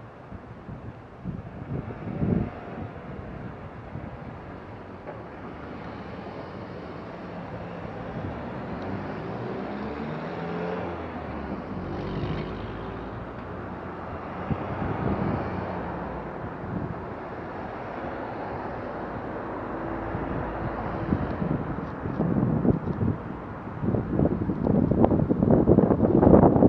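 Street traffic at an intersection: car engines and tyres passing, with gusts of wind rumbling on the microphone. It grows loudest near the end as a car pulls past close by.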